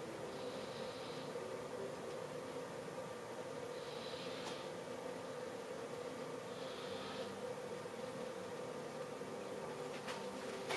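Quiet room tone: a steady low hum, with three faint soft hisses, one near the start, one about four seconds in and one about seven seconds in.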